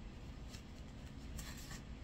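Paper and playing-card stock being handled by hand: a few faint, short rustles and slides, about half a second in and again around one and a half seconds, over a low steady room hum.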